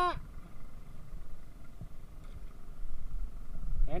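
Uneven low wind rumble on the microphone aboard a small outrigger boat at sea, with a faint steady hiss and a few light knocks.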